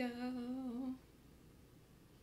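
A person humming a held note with a slight wobble in pitch for about a second, then it stops, leaving faint room tone.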